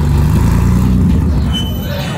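A vintage open-top sports car driving past, its engine giving a low note that fades near the end.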